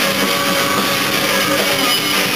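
Rock band playing live: electric guitars and a drum kit, loud and steady.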